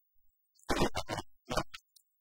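Two short scraping, rustling bursts of things being handled inside a crate, the first lasting about half a second a little under a second in, the second shorter near the end.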